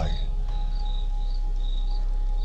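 Electronic music in a spoken-word pause: a deep, held sub-bass and a steady mid tone, with a short, high, cricket-like chirp repeating about twice a second.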